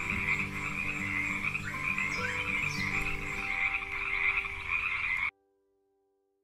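Amazon rainforest frogs croaking in chorus over a steady high-pitched trill, cutting off suddenly about five seconds in.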